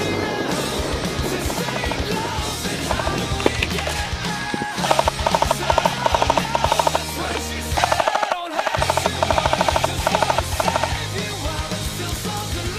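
Rock music playing over an airsoft light machine gun firing two long rapid bursts, starting about five seconds in and again about eight seconds in, each lasting two to three seconds.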